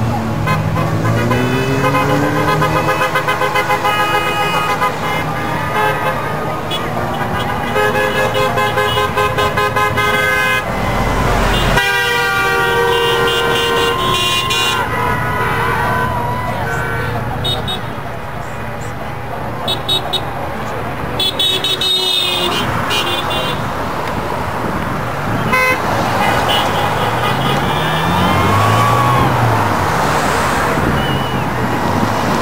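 Car horns honking over passing traffic: several horns sounding, some held and some tooted in quick repeated bursts.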